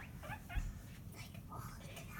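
Guinea pigs squeaking in a few short, high chirps, one rising in pitch, with a soft low thump about half a second in.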